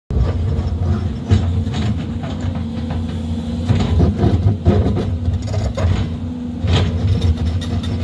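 SANY SY205C excavator digging into weathered rock: the diesel engine drones steadily under load while the bucket scrapes and knocks against the rock in scattered clanks.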